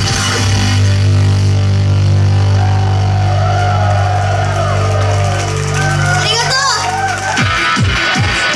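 Live club PA music: a low bass note held for about seven seconds at the close of a song, with crowd voices shouting over it. Near the end an electronic beat starts, with deep booming kick drums about two a second.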